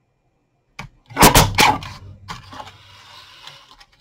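Guillotine paper cutter chopping through cardstock: a faint click, then two or three loud sharp snaps close together about a second in, followed by a softer rustle of card being shifted.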